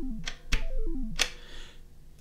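A sample recorded from a Pocket Operator PO-20 playing back on an Elektron Analog Rytm MK2 as it is trimmed: a click, then a quick run of electronic bleeps stepping down in pitch, heard twice, followed by a short hiss that fades out.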